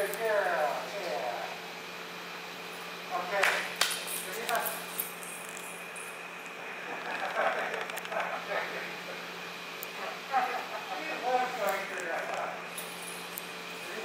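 Soft, brief snatches of a person talking, over a steady hum in a large hall, with one sharp click a few seconds in.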